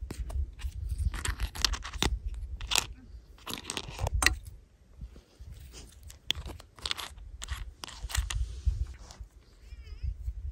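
Hard plastic toy pieces and surprise-egg capsule halves being handled, giving a string of sharp clicks, crackles and scrapes. A low wind rumble on the microphone runs underneath.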